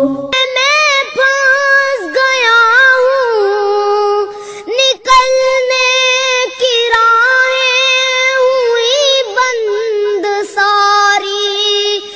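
A child singing solo a long, drawn-out, ornamented melodic passage of an Urdu devotional prayer song, the high voice sliding and wavering between held notes with no clear words.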